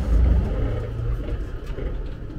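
Steady low rumble inside the passenger car of a JR East E257 series limited express train.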